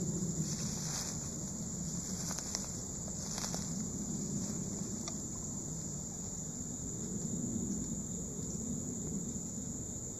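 Insects buzzing in a steady high-pitched chorus in summer woodland, with low rustling noise and a few faint clicks.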